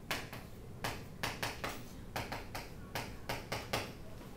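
Chalk writing on a blackboard: a rapid, uneven run of short taps and scrapes, about fifteen strokes.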